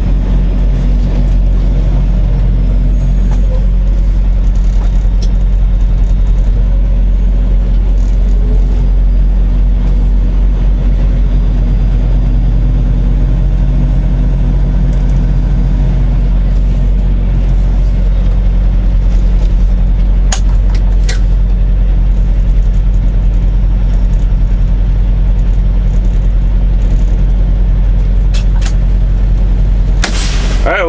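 Semi truck's diesel engine running at low speed while the rig creeps through a parking lot and pulls into a spot, heard from the cab as a loud, steady low drone. A few sharp clicks come about two-thirds of the way in and again near the end.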